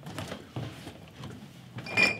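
Faint scattered clicks and knocks of something being handled, with a louder click and a brief ringing tone near the end.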